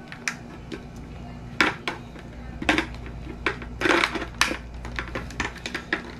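Hard plastic clicks and knocks of a KYT motorcycle helmet's visor and its side lock mechanism being handled and pressed into place, irregular, with the loudest cluster about four seconds in.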